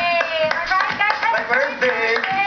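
Hands clapping several times, uneven in rhythm, over a high bending voice, heard off a television's speaker.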